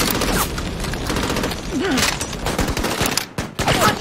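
Battle-scene gunfire: a dense, rapid fusillade of rifle and machine-gun shots with no break, amid flames.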